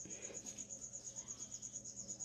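A faint, steady high-pitched insect trill of rapid, evenly spaced pulses.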